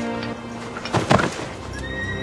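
Sound from a TV episode: background music with a horse neighing about a second in.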